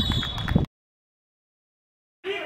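Voices and a few sharp knocks cut off abruptly about two-thirds of a second in, followed by complete dead silence, an edit gap between clips.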